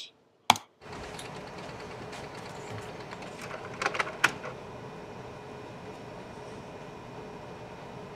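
A steady faint hum of the print room. Just after the start there is one sharp click, and about four seconds in a quick run of clicks and rustles as a freshly printed photo card is handled.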